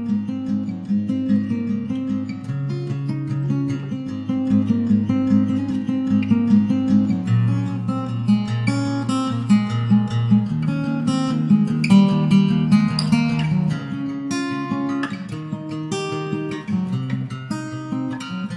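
Background music of a strummed acoustic guitar, playing continuously.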